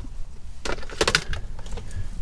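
Handling noises inside a car as a small handheld tuner is fetched out: a few light clicks and knocks.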